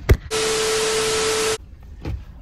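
A click, then a burst of static hiss with a steady hum tone under it, lasting a little over a second and cutting off sharply: a sound effect edited in at a cut between scenes.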